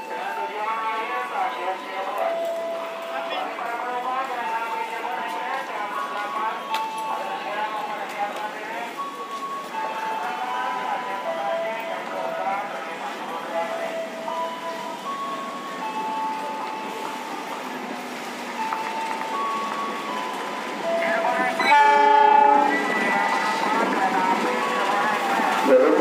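A diesel locomotive rolls into a busy station platform amid steady crowd chatter, and about 22 seconds in it sounds its horn loudly for about a second.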